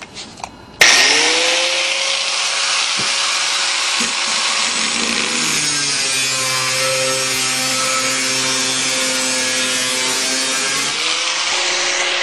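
A handheld zip-cut power saw starts up about a second in and cuts steadily through a dehumidifier pan. Its motor pitch drops partway through and climbs back near the end.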